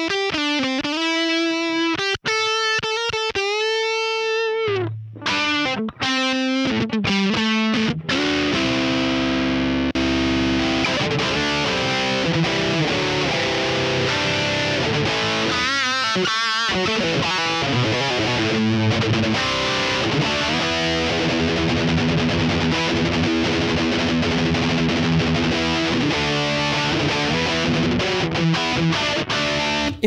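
Electric guitar played through the Vox MVX150H amp head on a distorted, fuzzy-sounding setting. It opens with a few sustained single notes with vibrato, then moves into dense distorted chord riffing.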